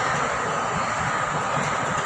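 A steady, even rushing noise with no distinct events, continuing unchanged under a pause in the narration.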